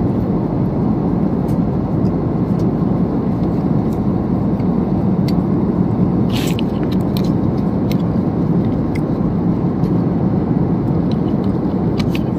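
Steady airliner cabin noise, an even drone with no change in level, with faint small clicks and a brief rustle about six and a half seconds in.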